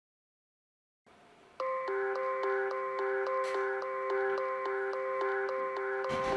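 Intro music: a repeating bell-like melody on a steady pulse of about four notes a second with light ticking percussion, coming in about a second and a half in after silence.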